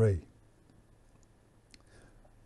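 A man's voice finishing a word, then faint room tone with a few small clicks, the clearest one near the end.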